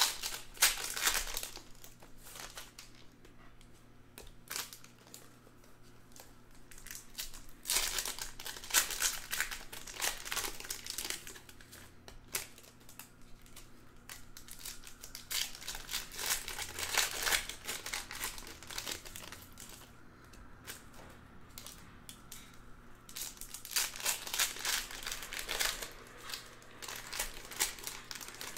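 Foil trading-card packs (2020 Panini Donruss Optic baseball) being torn open and crinkled by hand, in several bursts of crinkling with quieter handling between.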